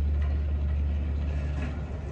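Shopping cart rolling across a store floor: a steady low rumble with faint rattling.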